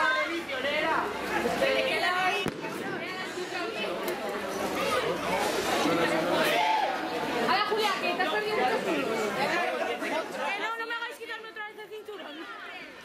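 Chatter of a group of young people: many voices talking at once, none clear enough to follow.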